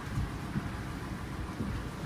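Low rumbling handling noise from a phone microphone pressed against clothing, with a few soft thumps as the fabric bumps and brushes it.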